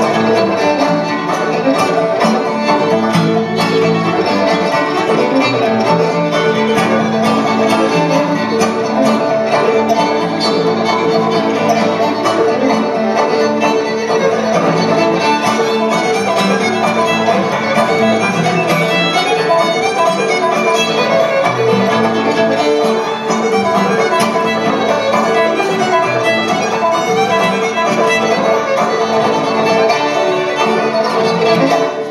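Old-time string band playing a tune together: fiddle leading over two banjos and an acoustic guitar, at an even, driving rhythm.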